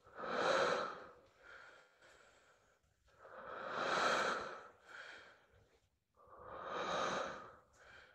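A person breathing heavily: three long, loud breaths about three seconds apart, each followed by a shorter, fainter one.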